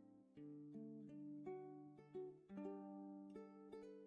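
Quiet background music: a gentle melody on a plucked string instrument, its notes changing every half second or so.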